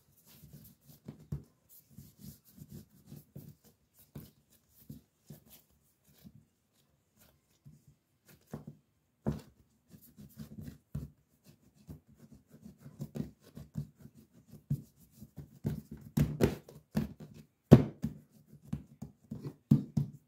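Hands kneading and patting a ball of pizza dough on a countertop: irregular soft thumps and rubbing, busier and louder in the second half, with a few sharper knocks against the counter.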